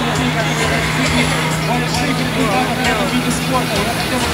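Jet ski engine running with a steady drone, pumping water up the hose to a flyboard, under the talk of nearby spectators.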